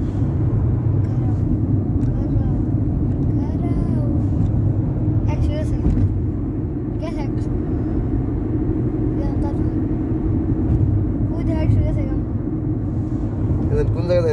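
Steady low rumble of a car heard from inside its cabin, with faint voices in the background.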